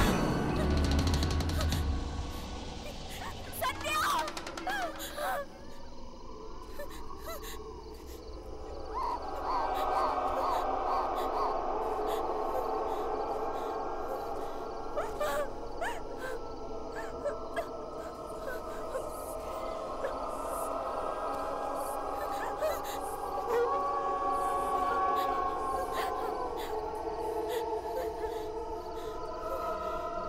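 Horror film score with layered sustained tones that settle in from about nine seconds on. A woman's frightened gasps come in the first few seconds.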